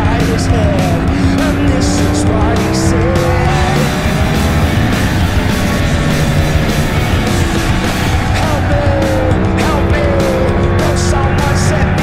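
Motorcycle engine running while riding through bends, its pitch rising and falling with speed, under loud rock music with a steady beat.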